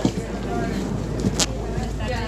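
Airliner cabin during boarding: a steady low hum with background passenger chatter, and two sharp knocks, one right at the start and another about a second and a half in.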